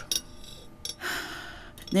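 A person's audible breath, a soft breathy sigh or intake lasting just under a second, just before speech begins. A faint click comes shortly before it.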